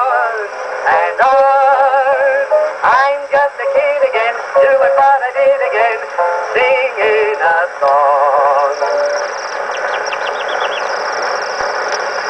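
An Edison Diamond Disc record playing acoustically on an Edison phonograph: a warbling, trilled whistled melody imitating a robin's song, with a run of quick high chirps near the end, over the disc's steady surface hiss.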